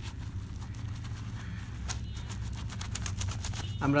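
Wet, soapy cloth being rubbed and scrubbed together by hand in a tub of sudsy water: a continuous run of irregular squelching and crackling of lather and wet fabric.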